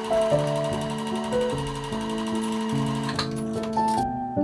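Electric sewing machine stitching at a fast, even rhythm, stopping just before the end, over soft piano background music.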